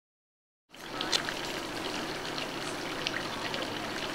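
After a moment of silence, a steady rushing outdoor background noise comes in under a second in, with scattered faint high ticks and chirps over it.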